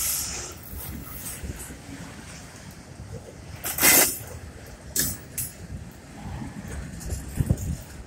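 Freight train of autorack cars rolling past at speed: a steady low rumble of wheels on rail, with a loud burst of noise about four seconds in and a shorter one about a second later.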